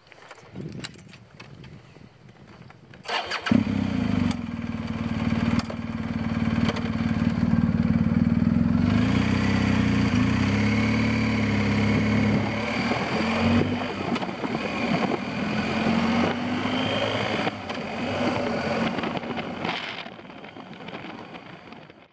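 BMW R1250GS boxer-twin engine starting after a few clicks about three seconds in. It then runs steadily as the motorcycle pulls away from a standstill and gathers speed, its pitch shifting as it goes.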